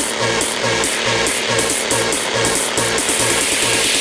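Hard trance music: a pulsing bassline under off-beat hi-hats. The hi-hats quicken in the second half into a continuous roll, building up to the next section.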